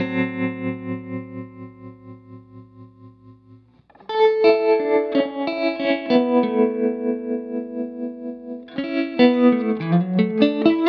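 Electric guitar played through a Mattoverse Inflection Point tremolo/vibrato pedal set to tremolo, its volume pulsing about four times a second. A chord rings and fades for about four seconds, then a second chord is struck and held, and quicker picked notes come in near the end.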